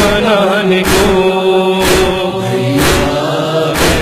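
Noha backing: wordless chorus voices holding long chanted notes, with a sharp percussive beat about once a second keeping the lament's rhythm.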